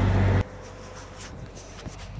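Steady low engine drone, such as an idling truck's, that cuts off suddenly less than half a second in, leaving faint background noise with a few light ticks.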